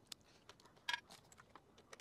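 Faint metal clicks of a socket and extension bar being fitted together by hand, with one sharper click about a second in.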